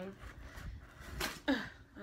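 Scissors working at the tape sealing a cardboard box, hard going. Quiet scraping, with one short sharp snip or rip a little past halfway, followed at once by a brief strained vocal sound of effort.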